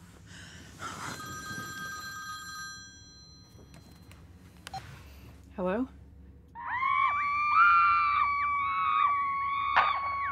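An electronic ringing tone from a bedside device stops about three seconds in. From about six and a half seconds a loud, wavering, voice-like sound runs over steady held tones without clear words.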